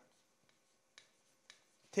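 Faint taps of a white marker pen writing on a chalkboard: two small clicks, about a second in and half a second later.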